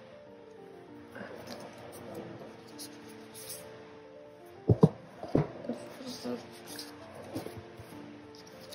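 Soft piano music with steady, sustained notes, behind paper handling of album booklets and cards. A few sharp taps or knocks about halfway through are the loudest sounds.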